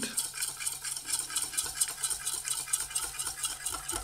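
Wire whisk beating in a stainless steel bowl, its metal wires scraping and clicking against the bowl in a quick, even rhythm, as soy cream is stirred into melted chocolate.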